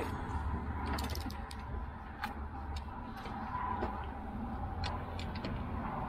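A few light, irregular clicks and clinks as a large prop-nut socket and breaker bar are handled and fitted on the outdrive's prop nut, over a steady low background rumble.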